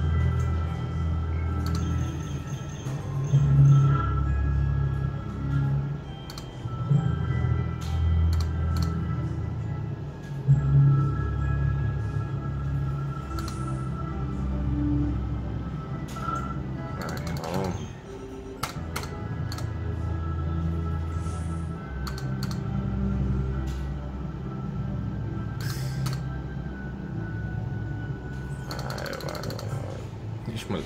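Novoline slot machine playing its free-games music, a repeating low-pitched tune with steady high tones over it, as the reels spin through the free games. Short clicks come now and then.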